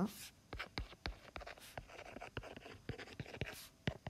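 Stylus writing on a tablet touchscreen: a quick run of light taps and short scratchy strokes, fairly quiet.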